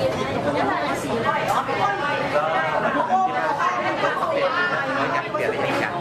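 Overlapping chatter of several voices talking at once.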